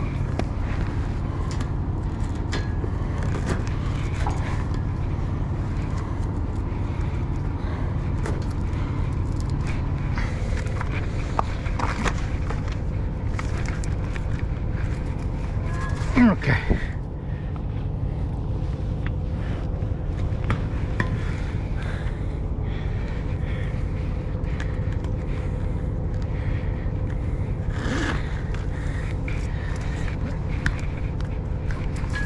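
Road train's diesel engine idling steadily with a low hum, under scattered knocks and scrapes from handling the sign. About sixteen seconds in, a brief loud sound drops sharply in pitch.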